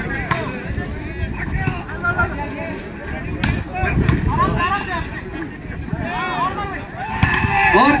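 Sharp slaps of hands striking a volleyball during a rally, the loudest about three and a half seconds in, over a steady murmur of spectators' and players' voices.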